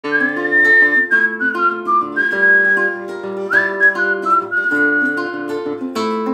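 A man whistles a melody over a nylon-string classical guitar played with plucked chords. The whistle is one clear high tone in two phrases, each opening with an upward slide and then stepping down.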